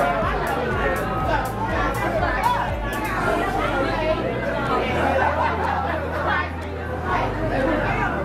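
Many people talking at once in a crowded room, a steady babble of overlapping voices with no single speaker standing out, and background music with a low bass line underneath.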